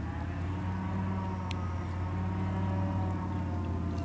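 Airboat engine and propeller droning steadily as the airboat approaches.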